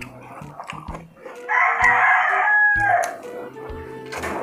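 A rooster crowing once, loud, for about a second and a half midway through, ending in a falling note. Around it are close eating sounds: chewing and lip smacks from people eating roast pork with their hands.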